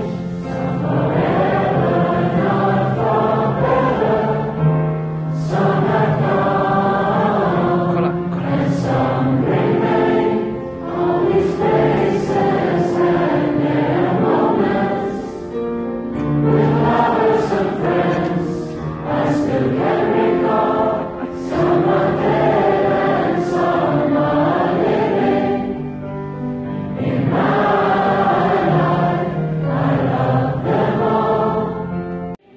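A large group of mixed voices singing together, communal singing by a hall full of people, in phrases of a few seconds with short breaks between them.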